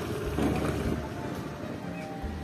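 Wind buffeting the microphone, giving a low rumble that is strongest in the first half second or so, over a hazy background.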